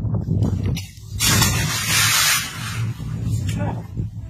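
A person jumping from a small wooden boat into pond water: one large splash about a second in that lasts about a second.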